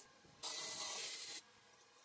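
A welder making a short weld on rebar, giving a steady hissing crackle that lasts about a second and then cuts off.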